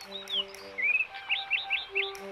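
Birds chirping: a few short chirps, then a quick run of four in the second half, over soft background music with held notes.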